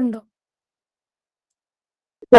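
A woman's voice finishing a word, cut off sharply, then dead silence on the line.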